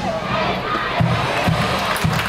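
Stadium crowd at a university baseball game: cheering sections chanting and shouting together, with music under the voices.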